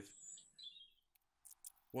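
A quiet gap with faint bird chirps in the first second, then a few faint short clicks.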